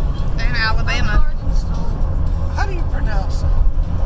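Steady low road and engine rumble of a car driving at highway speed, heard from inside the cabin. High-pitched, wavering voices cut in briefly about half a second in and again near three seconds.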